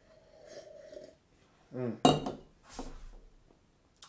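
A stemmed tulip glass of beer set down on a wooden bar top about two seconds in, giving one sharp clink, the loudest sound here, followed by a softer rub as it settles. Before it, a faint sip of beer and a murmured "mm".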